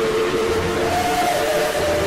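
Cartoon sound effect of a time machine switched on and running: a loud rushing noise with a steady whistle-like tone, which steps up in pitch about a second in.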